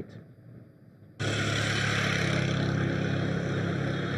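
A steady engine-like running noise with a low hum that starts abruptly about a second in.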